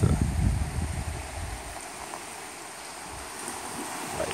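Wind buffeting the microphone for the first second and a half, then the steady hiss of small waves breaking on a sandy shore.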